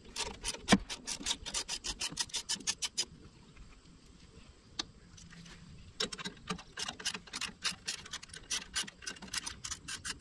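A hand ratchet wrench clicking rapidly as a bolt on a tractor's side housing is turned loose. The clicking comes in two spells, for about three seconds and then again from about six seconds in, with a pause between.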